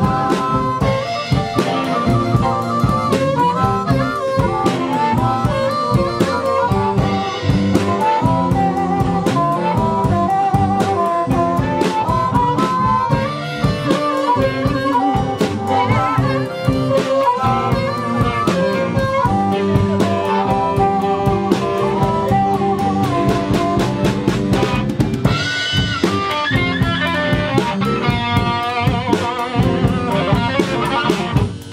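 Blues band playing live: a harmonica lead over a drum kit, bass, guitar and keyboard, with the electric guitar coming forward near the end.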